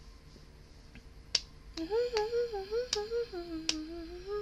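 A woman snapping her fingers in a steady beat, about one snap every three-quarters of a second, while humming a wavering tune from about halfway in.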